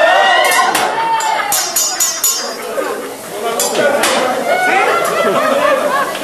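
Metal spatulas clinking against a steel teppanyaki griddle, with a string of sharp clinks in the first four seconds. Many diners are talking over it.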